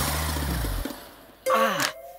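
A sudden hit with a low booming tone that fades away over about a second, a film sound effect for a man's back giving out as he lands on a bed. About a second and a half in comes his short cry of pain, falling in pitch.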